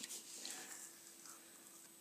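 Faint handling sounds of fingers breaking and picking at a hollow chocolate egg and its foil wrapper: a small click at the start, then soft rustling that fades within the first second.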